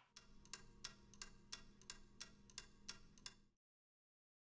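Pendulum wall clock ticking faintly and evenly, about three ticks a second, over a low hum; the sound cuts off suddenly about three and a half seconds in.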